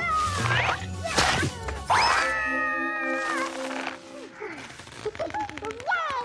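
Cartoon soundtrack: music mixed with high, sliding, wordless cartoon voices, with a long held note a couple of seconds in and quieter, scattered sounds towards the end.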